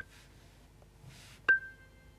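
GarageBand's Hammond organ emulation (Soul Organ patch on iPad) playing one short note about a second and a half in, with a bright chime at the attack from the third-harmonic percussion that dies away within half a second.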